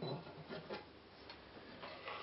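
A few faint, light ticks, spaced irregularly, over quiet room tone.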